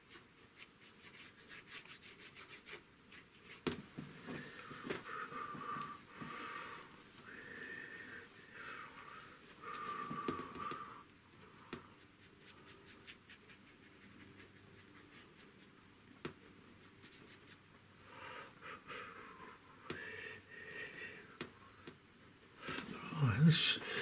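Faint scratching and rubbing of a paintbrush working oil paint on an MDF panel, in short bouts, with wheezy breathing close to the microphone.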